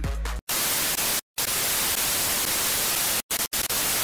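Television static sound effect: an even hiss of white noise that starts about half a second in and drops out to silence several times for a split second. The background music bed plays under the start, before the static.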